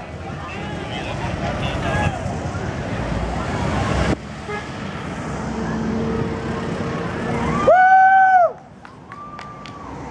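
Motorcade vehicles passing close: engine and road noise build, and a single loud vehicle horn blast sounds for under a second near the end. A fainter, higher steady tone follows just after it, with onlookers' voices in the background.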